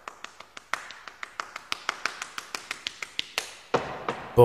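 A quick run of light, sharp taps or clicks, about four or five a second and uneven in strength.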